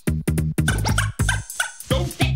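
Late-1980s hip hop instrumental: a drum-machine beat with short, choppy sampled stabs cut over it, and no rap vocals.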